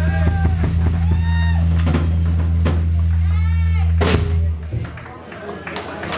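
Live rock band holding a final sustained low bass note with drums and wavering guitar or vocal lines, a loud crash about four seconds in, then the music stops about five seconds in, leaving quieter room sound.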